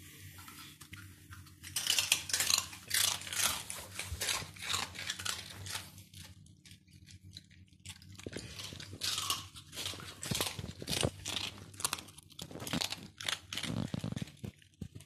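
Dogs crunching and chewing hard, crisp pieces of pork crackling: a run of sharp crunches starting about two seconds in, a short lull, then more crunching from about eight seconds on.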